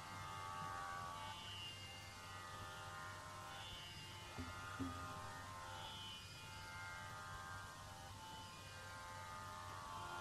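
Faint tambura drone, its strings plucked in a slow repeating cycle, over a steady low mains hum. Two soft knocks about halfway through.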